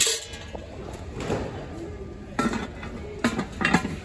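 Aluminium roaster's lid and pot clinking and knocking against each other as they are handled, with a few sharp knocks in the second half.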